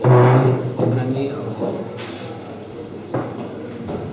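A man speaking Slovak, loudest in the first second, with a short knock about three seconds in.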